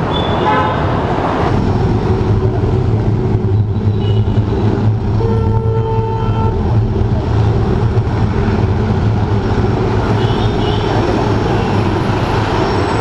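Steady city street traffic noise, with vehicle horns honking briefly a few times: near the start, in the middle and near the end.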